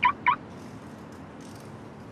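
Car alarm chirping twice in quick succession as the parked sedan is keyed by its remote, its lights flashing. The two short, high chirps come right at the start, over a steady low street hum.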